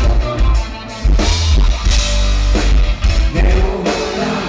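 A live rock band playing loud, with drum kit, electric guitars and bass guitar, heard from the audience with a heavy, booming low end.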